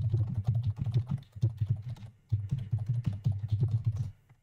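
Fast typing on a computer keyboard: a dense run of keystrokes with a brief pause a little past two seconds in.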